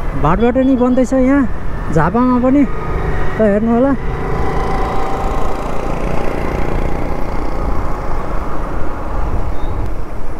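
Motorcycle riding along a road, with its engine and wind noise as a steady rumble. A man's voice speaks in short rising and falling phrases during the first four seconds, then stops.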